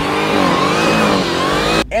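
Dodge Challenger Black Ghost's supercharged V8 revving hard, its pitch dipping and then climbing, cutting off shortly before the end.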